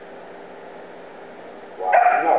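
An 8-week-old Goldendoodle puppy giving one short, high bark near the end, after a stretch of quiet hall background.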